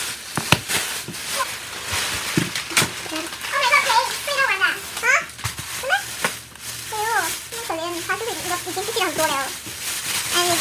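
Thin plastic grocery bags rustling and crinkling as items are pulled out of them, with a few sharp crackles. A voice talks quietly over it in short stretches.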